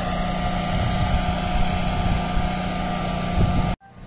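Steady mechanical hum of the motor drive raising a tilt-over antenna tower, with wind on the microphone; it cuts off suddenly near the end.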